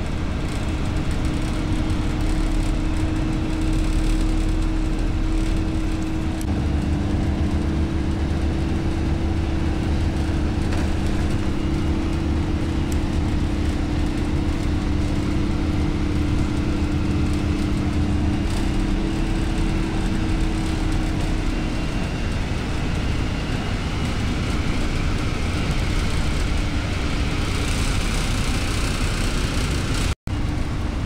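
Engine drone and road noise of a moving vehicle, heard from on board as it drives along a highway. The steady engine hum rises a little in pitch about six seconds in and fades into the general road rumble after about twenty seconds.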